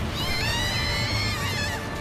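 A high, wavering tone with several overtones, held for about a second and a half and sliding down at the end, over a steady noisy background in the anime's soundtrack.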